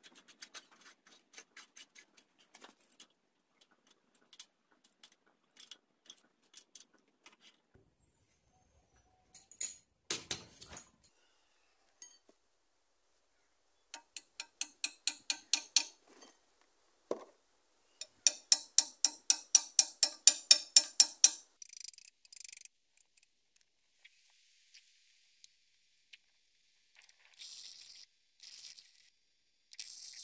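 Rapid ratchet-like clicking in runs, the loudest at about eight clicks a second a little past the middle. Near the end come short bursts of arc-welding crackle as the new radiator grille bars are welded on.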